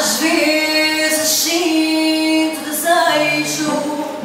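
A woman singing through a microphone over acoustic guitar accompaniment, her voice coming in at the start of a phrase and holding long notes.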